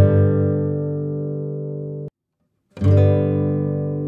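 Instrumental music of a strummed acoustic guitar. A chord rings and fades, cuts off abruptly about two seconds in, and after a brief silence another chord is struck.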